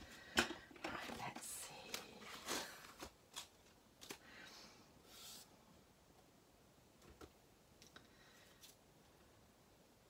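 Faint rustling and light taps of paper die-cuts and a thin silicone craft sheet being picked up and laid down on a craft mat, busiest in the first five seconds, then a few soft clicks.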